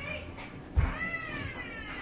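A dull thump about a second in, followed at once by a high-pitched, drawn-out cry that rises and then falls over about a second.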